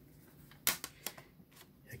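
Plastic CD jewel case being handled and set down: one sharp click about two-thirds of a second in, followed by a few lighter clicks.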